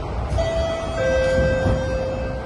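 Two-note descending chime from a Thomson–East Coast Line train's public-address system, the higher note about a third of a second in and a lower note from about a second in that is held, the signal for an onboard announcement. Under it runs the steady low rumble of the train.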